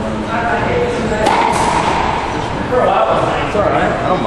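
Indistinct voices talking throughout in a reverberant court, with a sharp smack of a racquetball being struck a little over a second in.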